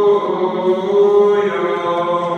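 Orthodox akathist chant: a singing voice holding long sustained notes that step down and back up in pitch.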